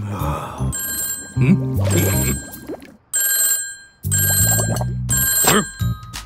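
Telephone ringing in three repeated bursts over cartoon background music, with a few short vocal grunts between rings.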